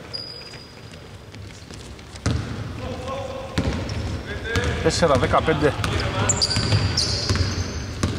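A basketball being dribbled on a hardwood court, with high sneaker squeaks and players' voices, in a large, near-empty arena. The court noise rises suddenly a little over two seconds in.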